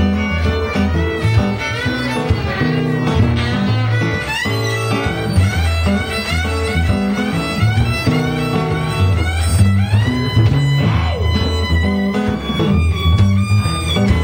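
Live blues played by a small acoustic band: guitar with a cupped harmonica carrying the lead in long, bending notes.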